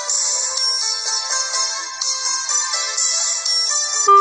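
Instrumental backing music: a quick run of short melody notes over a bright, shimmering high percussion. The flute's long held tones are absent here.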